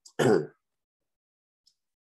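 A man's short throat-clear, one brief voiced sound just after the start, followed by silence.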